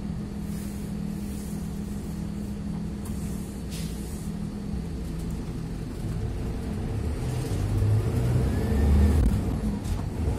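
Medium-size city bus heard from inside the cabin: the engine runs at a steady idle with a few short hisses, then the bus pulls away and the engine grows louder under acceleration, with a whine that rises and falls near the end.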